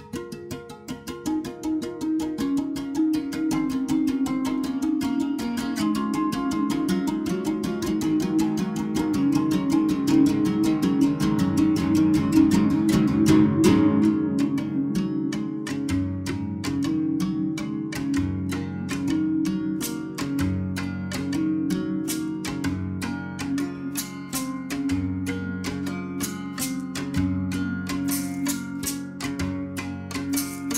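An ensemble of six berimbaus, their steel strings struck with sticks in fast interlocking rhythms over gourd resonators, with caxixi basket rattles shaking along. The sound swells over the first few seconds. From about halfway a deeper note pulses every second or two.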